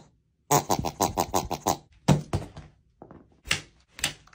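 Green rubber squeeze toy being squeezed: a run of quick pulsing squeals that fall in pitch for about a second, then one shorter squeal. A single sharp tap follows near the end.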